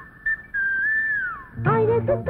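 Whistled melody in a film song, heard on its own while the band drops out: a short high blip, then one long held note that wavers and slides down at its end. The band and singing come back in near the end.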